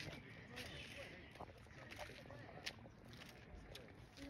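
Near silence, with faint hushed voices in the first second and a few light clicks.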